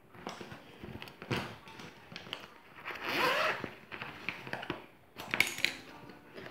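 Handling of a clear plastic zippered brush pouch: irregular rustles and clicks, with a longer rasp about three seconds in.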